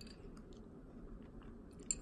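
Faint chewing of a mouthful of buko pandan salad, with a few light clicks.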